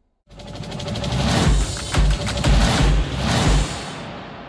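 Short musical transition sting for a news programme: a swelling whoosh of music with a run of about five deep bass hits. It fades out near the end.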